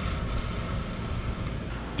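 Steady outdoor background noise: an even low rumble with some hiss, no distinct events.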